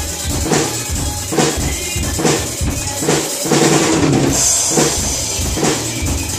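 PDP acoustic drum kit played in a steady rock beat: bass drum and snare strokes, with a bright cymbal crash ringing from about four seconds in.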